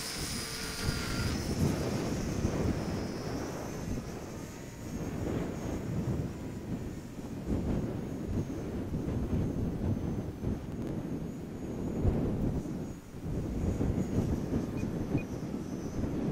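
High-pitched whine of a small electric RC warbird's motor and propeller. It climbs as the throttle comes up at the hand launch, then thins out and fades as the plane flies off. Under it, gusty wind buffets the microphone.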